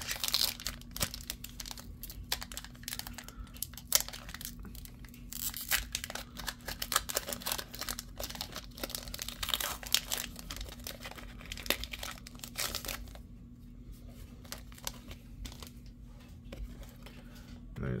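Foil wrapper of a Pokémon card booster pack being torn open and crinkled in the hands: a dense run of crackles and rips for about thirteen seconds, then it goes quieter.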